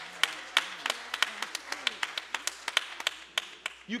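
Hand claps from a few members of a church congregation, sharp and separate at about five or six a second, uneven rather than in a steady beat, with faint voices murmuring underneath.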